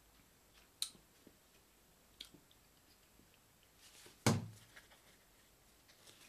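Mostly quiet small room with a few faint sharp clicks and one louder short sound about four seconds in.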